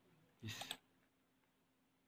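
A single computer mouse click about three-quarters of a second in, against near silence.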